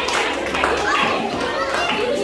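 Many overlapping voices, children's among them, chattering at once in a large room, with no one voice standing out.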